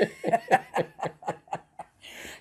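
Two people laughing: a run of short chuckles, about five a second, dying away toward the end.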